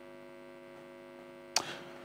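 Steady electrical hum made of several steady tones on the line. A sharp click sounds about one and a half seconds in.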